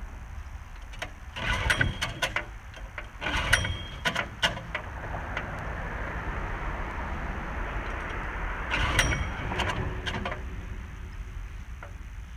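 Recoil starter rope of a long-tail mud motor's small engine being pulled several times, with the engine not catching. The engine is being cranked without the choke set, which the owner takes for the reason it won't start.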